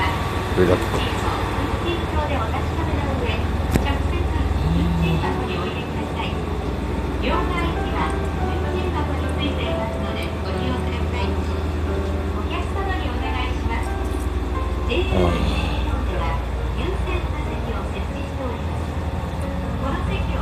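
Steady low hum inside a stationary train car, with indistinct voices over it.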